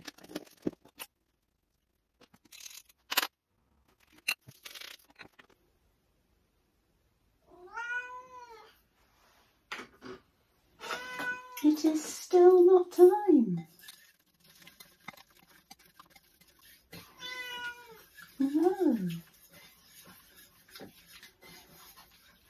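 A pet cat meowing to be fed ahead of mealtime: several rising-and-falling meows in three bouts, the middle bout the longest and loudest. A few sharp clicks of kitchen items come in the first few seconds.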